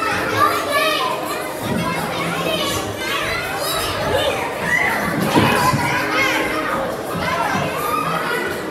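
Many children shouting, squealing and chattering at once in a large indoor play hall, a continuous din of young voices.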